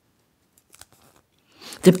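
Near silence with a few faint small clicks, then a voice starts reading near the end.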